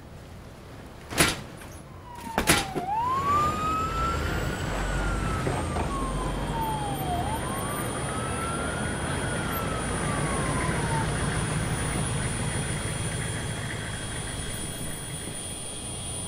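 A siren wailing in two slow rising-and-falling sweeps that die away about eleven seconds in, over the steady low rumble and high whine of a large military helicopter's turbine engines. A couple of sharp knocks come just before the siren starts.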